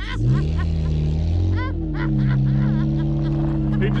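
Saturn S-series sedan race car's four-cylinder engine revving under hard acceleration on the ice. Its note climbs, dips briefly about a second and a half in, then rises again and holds steady. Bystanders laugh and call out over it.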